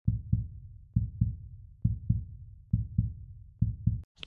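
Heartbeat-like low double thumps, lub-dub, repeating evenly about once a second: five beats in all.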